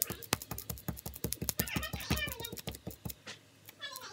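Rapid, sticky clicking and tapping of fingertips working tacky glue-stick residue on a glass tabletop, the glue gumming up into stringy slime; the quick run of sharp ticks stops a little after three seconds.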